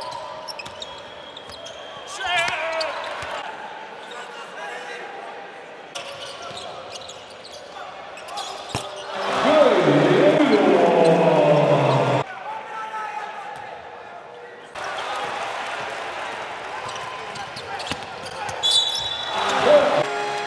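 Basketball game sound in a large arena: the ball bouncing on the hardwood court under crowd noise, with a man's voice. There is a loud, excited stretch of voice about ten seconds in, and the sound jumps abruptly several times where clips are cut together.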